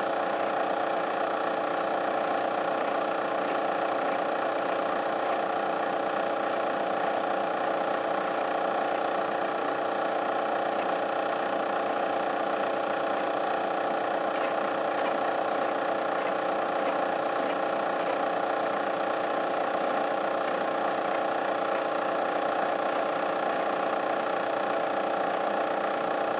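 CNC milling machine running steadily as a number 8 center drill turns at about 200 RPM and feeds slowly into the workpiece: a steady hum of several tones that holds unchanged throughout.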